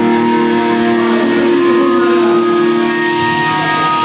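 Live hardcore band's amplified, distorted electric guitars, held chords ringing on steadily.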